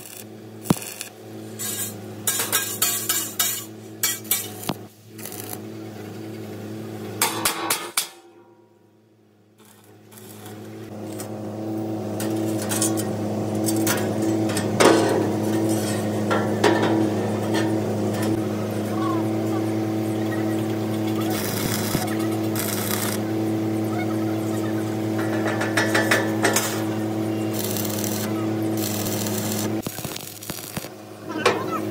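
Stick (arc) welding on steel plate: the crackle of the welding arc over a steady electrical hum, loud and continuous through the second half, after a few seconds of sharp taps and clicks and a brief quiet gap.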